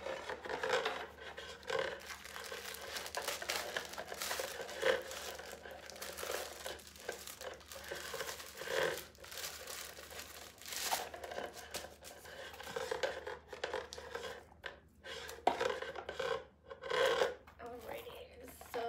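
Paper crinkling and rustling, handled almost continuously with irregular short pauses, as packing paper is pulled out of a small handbag.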